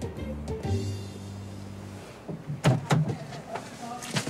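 Background music with a steady beat for about two seconds, then a Mercedes-Benz car door being opened: a few sharp clicks and knocks about two and a half to three seconds in.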